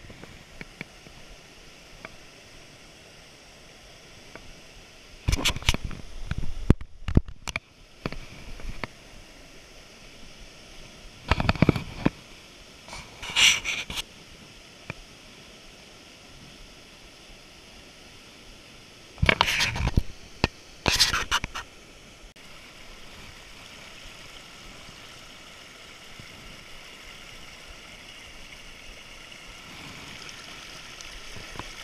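A mountain creek and small waterfall running steadily over rocks, interrupted by several loud, brief bursts of noise in the first two-thirds.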